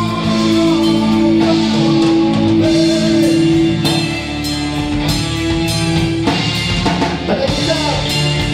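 Live rock band playing: electric guitar and drum kit over sustained low notes, with regular drum and cymbal hits.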